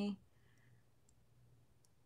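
Near silence: room tone with two faint clicks, about a second in and near the end.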